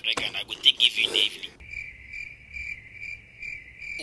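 Cricket chirping sound effect: a rougher chirring for the first second and a half, then a clear, high chirp pulsing about twice a second. It serves as the comic 'crickets' cue for an awkward silence.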